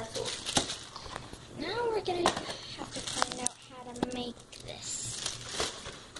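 Crinkling plastic wrapper around a frozen cinnamon pretzel as it is handled, with sharp crackles. Brief bits of voice are heard about two seconds in and again about four seconds in.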